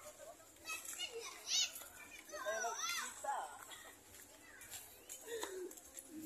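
High-pitched children's voices calling and squealing over general chatter, with the loudest squeals about a second and a half in and again around two and a half to three seconds in.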